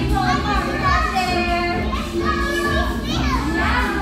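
Young children's voices calling out and chattering over background music.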